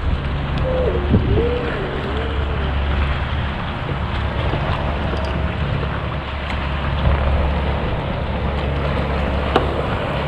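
Wind buffeting the microphone with a steady low rumble, over choppy water lapping against a fishing kayak's hull. A short wavering tone comes in about a second in.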